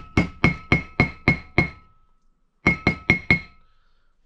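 Ball-peen hammer tapping a grease dust seal into the hub of a disc brake rotor: a run of about seven quick metallic strikes, a pause of about a second, then four more. Each strike sets the rotor ringing briefly, with a clear high tone. The taps go around the seal so it seats evenly rather than kinking.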